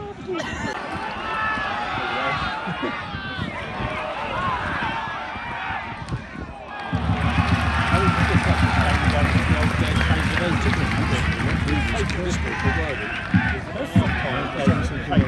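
Football spectators talking and calling out, many voices overlapping in a chatter. About halfway through, a steady low rumble joins the chatter and the overall level rises.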